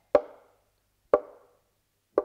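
Two sharp knocks about a second apart, each with a short ringing tail, like a knock on a wooden door.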